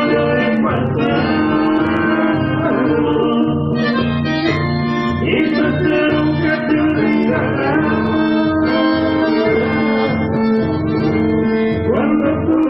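Live chamamé played by a folk ensemble: piano accordion and bandoneón carry the melody in held, reedy chords, over strummed acoustic guitar and a steady bass beat.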